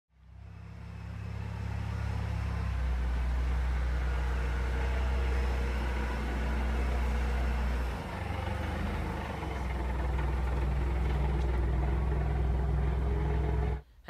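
Forklift running as it carries a pallet, a steady low engine drone that fades in at the start. The note shifts about three seconds in and dips briefly about eight seconds in.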